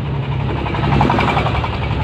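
Rapid, regular knocking of a nearby running engine, loudest about a second in as the car draws level with it, over the steady low hum of the car's own engine.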